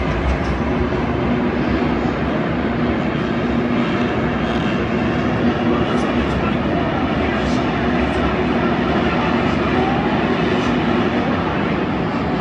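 A field of supercross dirt bikes racing around an indoor stadium track, heard from the stands as a steady drone of many engines under the reverberant noise of the crowd.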